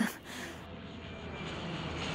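Steady aircraft engine drone, a noisy hum that comes in after a brief dip and slowly grows louder.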